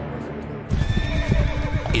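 Horses: a run of hoofbeats and a whinny that come in suddenly about two-thirds of a second in, over a low sustained music drone.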